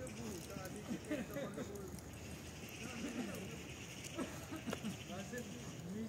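People talking nearby, several voices overlapping, with a few sharp clicks in between.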